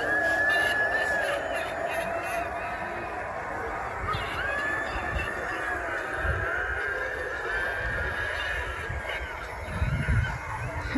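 Drawn-out, wavering high wails, each about a second long, over a lower steady drone: eerie sound effects from a Halloween yard display.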